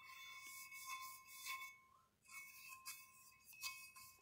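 Faint scrubbing of a brass wire brush on a new brake rotor, in short passes broken by a pause about two seconds in, as brake cleaner is worked in to strip the rotor's factory coating.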